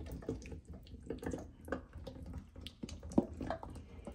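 Sauce-coated meatballs sliding out of a stainless steel mixing bowl into a slow cooker crock: a string of soft wet plops and taps, with one louder tap about three seconds in.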